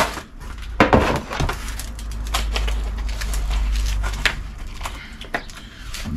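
A few sharp clicks and knocks with light rustling: a measuring rule, pencil and plywood boards being handled on cardboard while wall positions are marked out, over a steady low rumble.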